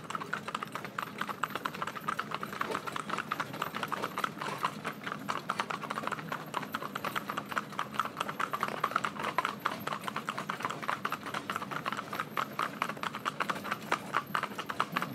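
Hoofbeats of three Shetland ponies trotting together on a tarmac road: a quick, dense, uneven clatter of hooves.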